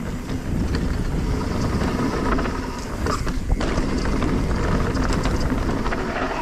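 Full-suspension enduro mountain bike riding down a dirt singletrack: steady low rumble of knobby tyres on the dirt and air rushing past the camera, with scattered clicks and rattles from the bike over bumps.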